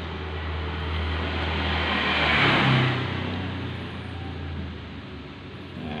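A motor vehicle passing by. Its noise swells smoothly to loudest about halfway through and then fades, over a steady low hum that drops away about a second before the end.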